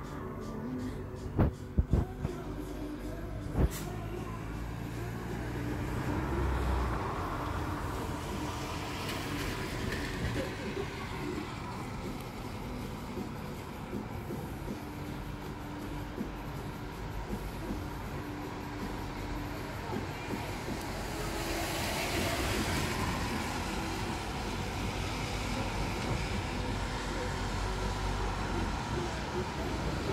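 Outdoor traffic noise from passing vehicles, a low rumble that swells and fades twice, with a few sharp knocks in the first four seconds.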